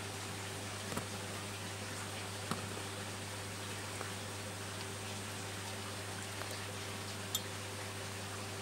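A steady low electrical hum, with a few faint, isolated clicks and taps from small pieces of coral rubble and toothpicks being handled on a table.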